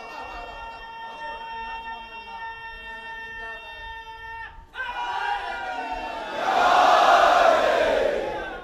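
A hall full of men shouting together in one loud collective response. It swells about five seconds in and is loudest near the end. Before it, a steady pitched tone sounds over a low crowd murmur and cuts off suddenly about four and a half seconds in.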